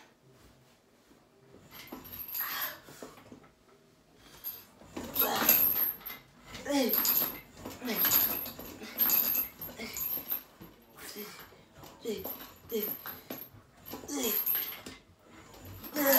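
A man's strained grunts and whimpering breaths with each rep of a leg-extension set pushed to failure. They come in a string of short bursts about a second apart, starting about two seconds in.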